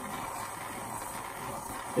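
Jeweler's soldering torch burning steadily with an even hiss as its flame heats a silver sheet for soldering a bezel.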